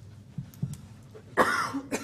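A person coughs once, about one and a half seconds in, over low room noise with a few small knocks.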